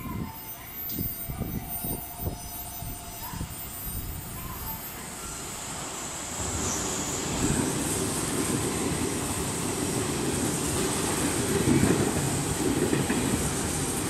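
JR Central 383 series electric multiple unit running through the station without stopping. The sound builds about six seconds in and stays loud as the cars go by close at hand.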